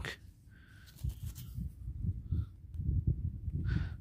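Low, uneven rumble and soft thumps with a few faint clicks, typical of wind buffeting and hand handling on a close handheld microphone.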